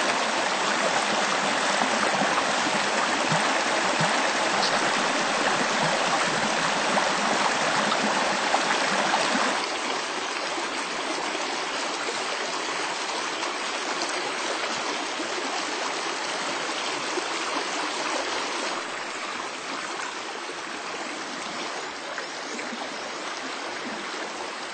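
Small river running: a steady rush of flowing water, dropping a little in loudness about ten seconds in and again near the end.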